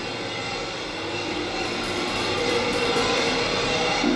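KONE M-series hydraulic elevator car travelling in its shaft with the doors shut: a steady rushing, rumbling ride noise with a whine in it, growing slightly louder as it goes.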